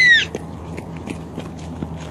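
A child's high-pitched squeal, falling in pitch and cutting off a moment in, then only faint scattered clicks over a low steady hum.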